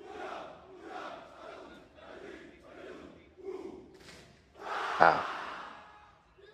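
A large group of Indonesian Army soldiers shouting a military yel-yel chant in unison. Short rhythmic shouts come about every two-thirds of a second, then one longer, louder shout about five seconds in.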